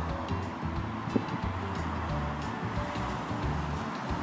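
Background music with a repeating bass line, with one short sharp knock a little over a second in.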